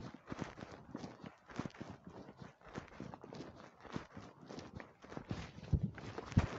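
Footsteps of a person walking, irregular knocks a few times a second, with a heavier thump near the end.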